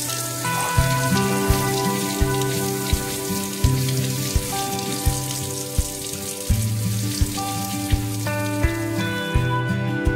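Tap water running in a steady hiss onto tomatoes in a stainless steel sink, under background guitar music with a steady beat. The water sound ends about nine seconds in.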